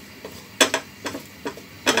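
Wooden spatula knocking and scraping against a nonstick frying pan while stirring: a few sharp clicks, the loudest about halfway in and near the end.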